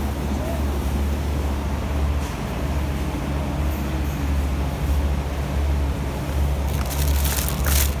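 A steady low mechanical hum with a background of noise and faint voices. Near the end, plastic produce bags crinkle as a hand grabs bagged grapes.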